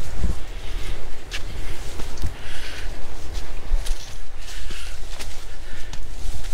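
Footsteps on a dirt woodland path, with short crunches and leaves and plants rustling against legs, under a low steady rumble on the microphone.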